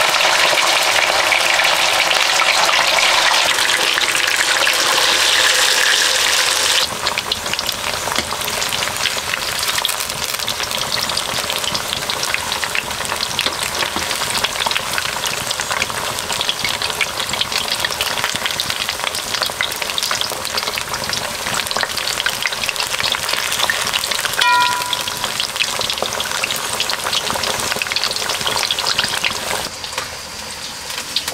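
Masala-coated fish pieces deep-frying in hot oil in a black iron wok: a dense, crackling sizzle, louder for the first several seconds, while a steel spoon turns the pieces. One short metal clink sounds about two-thirds of the way through.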